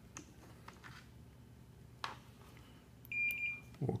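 A digital multimeter gives one short, steady, high-pitched beep about three seconds in. A few faint clicks from handling come before it.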